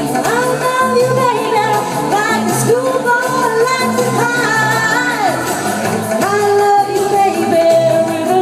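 A woman singing a pop song into a handheld microphone, holding long notes and sliding between them, over amplified backing music with a steady pulsing bass line.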